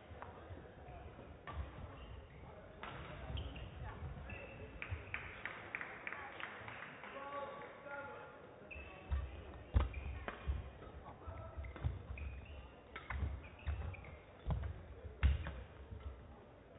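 Badminton rally: sharp racket strikes on the shuttlecock and players' feet thudding on the court, coming thick and fast from about halfway through.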